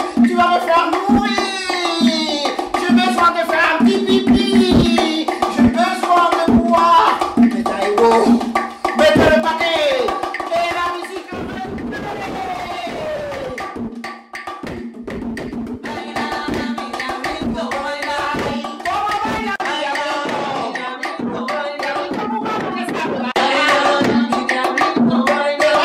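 Bongos drummed in a running rhythm with claves, a voice calling out over the drumming.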